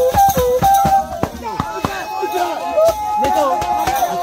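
Live traditional percussion music accompanying a Goli mask dance: quick, continuous drum and rattle strikes, with voices singing and calling over them.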